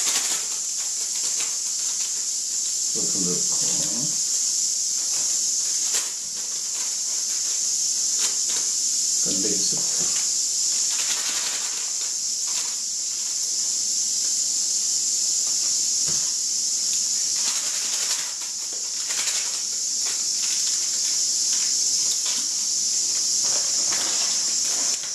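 Steady high hiss of steam venting from a flameless self-heating cooker (Eco Magic Cooker), its heat pack reacting with water to boil the ramen broth. Over it come scattered crinkles and clicks of instant-ramen soup sachets being torn open and shaken into the pot.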